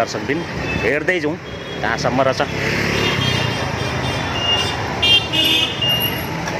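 Street traffic: a motor vehicle passes close by, its engine rising from about two and a half seconds in, with several short high beeps in the last two seconds.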